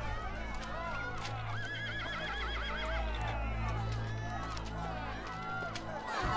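Racecourse crowd cheering and shouting, with a horse whinnying about two seconds in, a wavering call lasting a little over a second.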